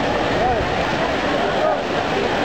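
Busy outdoor pool ambience: a steady rushing noise with distant voices calling out briefly a couple of times.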